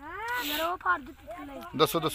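People's voices, beginning with a drawn-out call that rises and falls in pitch and followed by broken talk.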